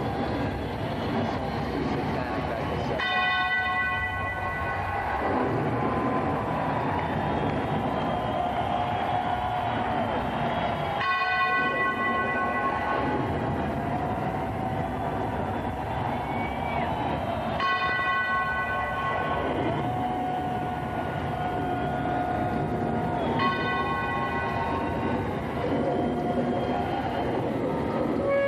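A bell tolling four times over a concert PA, the strokes several seconds apart and each ringing for about two seconds, over a steady rushing noise and crowd.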